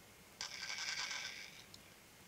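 A small brass stemless button top scrapes and chatters on a glass mirror plate for about a second as it runs out of spin and tips onto its edge, fading out, with a faint click just after.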